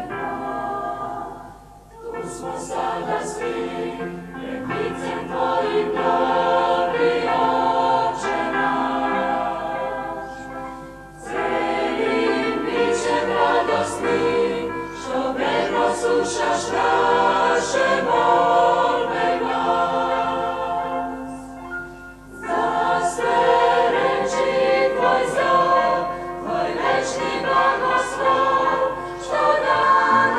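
Mixed choir of men's and women's voices singing a hymn in long phrases, with short breaks between phrases about 2, 11 and 22 seconds in.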